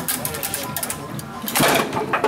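Foosball table in play: quick clicks and clatter of the rods and plastic players knocking the ball. There is a louder burst of clatter near the end, with voices in the background.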